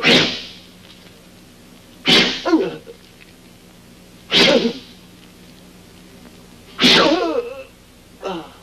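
A man being struck four times, each sharp blow followed at once by his short pained cry, about every two seconds.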